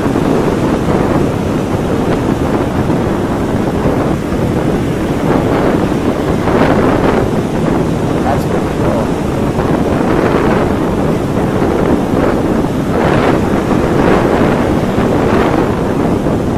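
Wind buffeting a handheld camera's microphone: a loud, steady rushing noise that swells briefly several times.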